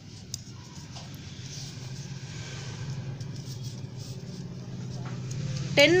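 A low, steady motor-vehicle engine rumble growing gradually louder, with a few faint clicks in the first second.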